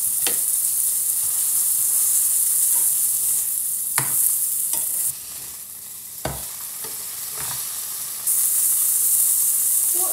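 Beef burger patties sizzling steadily in a hot non-stick frying pan, with a few sharp taps and scrapes of a spatula on the pan. The sizzle drops noticeably quieter from about the middle until near the end, then comes back at full strength.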